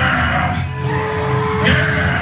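Grindcore band playing live: drum kit close to the microphone with distorted guitar and bass, and a louder hit about three-quarters of the way through.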